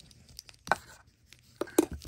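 Handling of a boxed hair straightener's accessories: a few light plastic knocks and taps as a black plastic hair clip is set into the cardboard box's foam insert, the sharpest about three-quarters of a second in and near the end, with faint rustling between.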